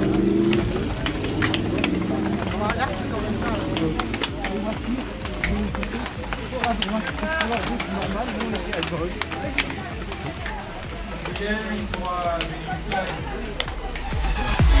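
Many voices chattering in a pack of road cyclists at a race start, with frequent sharp clicks of cleats snapping into pedals as the riders set off.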